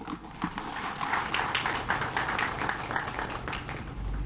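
Audience applauding, many separate hand claps, easing slightly toward the end.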